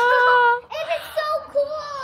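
A child's high voice singing in long, held notes, the first lasting about half a second before a short break and a second held note.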